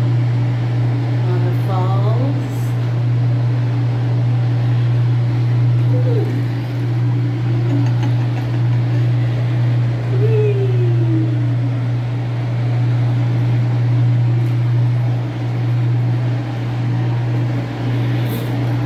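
Whirlpool bathtub's jet pump running with a steady low hum over a haze of churning water. A few short sliding, voice-like sounds come and go about 2, 6 and 10 seconds in.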